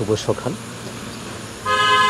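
A vehicle horn starts near the end: one steady, held blast with two close pitches sounding together.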